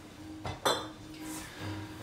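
Glass spirit bottles clinking against each other as one is taken from a crowded bar cart: two quick clinks just over half a second in.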